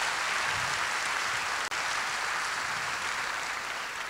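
Audience applauding steadily, tapering off near the end.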